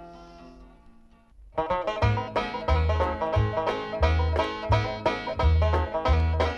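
A country song fades out, then comes a brief quiet gap. The next country song starts about one and a half seconds in, with a fast plucked-string instrumental intro over a steady, regular bass beat.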